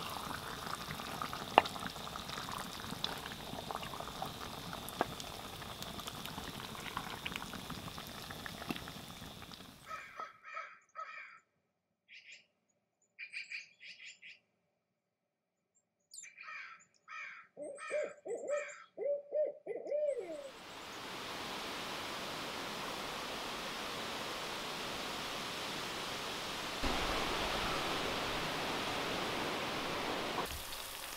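A wood fire crackling under a simmering skillet for about ten seconds, then a run of owl hoots and calls against silence, ending in several falling hoots. From about twenty seconds in, steady rain.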